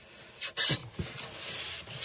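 Irregular rustling and rubbing noises, loudest about half a second in, with short low creaks around half a second and a second in.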